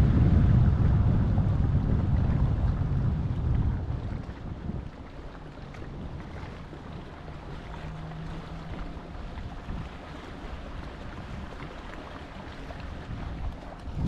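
Wind buffeting the microphone, heavy for about the first four seconds, then dropping to a lighter wind and sea noise over open water. A faint low hum shows briefly near the middle.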